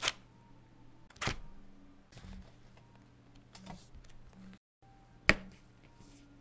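Sharp taps and clicks of plastic game pieces handled on a Clue board, one a little over a second in and the loudest about five seconds in, over a low steady hum. The sound drops out completely for a moment just before the loudest tap.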